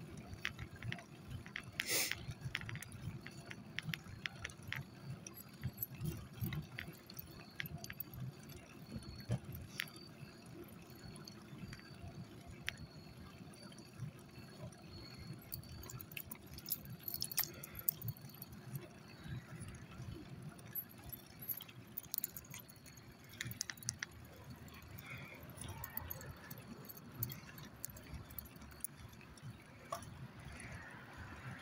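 Small wheels rolling over pavement with a low rumble, with light metallic jingling and scattered clicks throughout.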